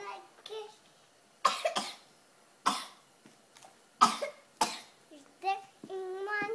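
A few loud coughs in the middle, between short snatches of a child's singing at the start and end.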